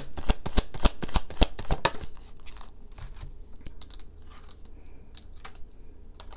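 Tarot cards being shuffled by hand: a fast run of card clicks and flicks for about two seconds, then a few scattered taps as the cards are handled and one is drawn.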